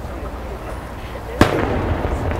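An aerial firework shell bursting with one sharp boom about one and a half seconds in, followed by a rolling echo, over the chatter of a crowd.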